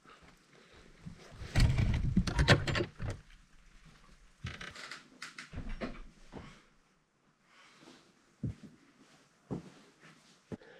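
An old mountain hut's door being opened and someone stepping inside. A loud cluster of creaks and knocks comes about two seconds in, then quieter bumps, and a few sharp knocks, like footsteps on floorboards, near the end.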